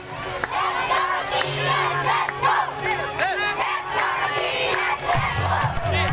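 A crowd of young people shouting and cheering, many voices at once overlapping. A low steady hum joins near the end.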